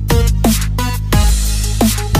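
Electronic background music in a dubstep-like style. It has a steady deep bass, punchy drum hits several times a second, and short tones that slide down in pitch.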